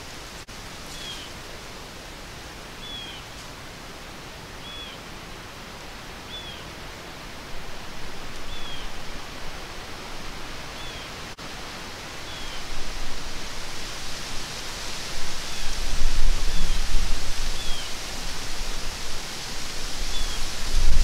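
Steady hiss of wind through bare woods with a small bird's short chirp repeating about every second and a half. Near the end, gusts buffet the microphone with a low rumble, the loudest part.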